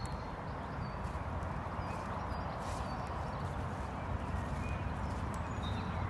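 A horse walking on grass, its hooves landing in soft, uneven footfalls.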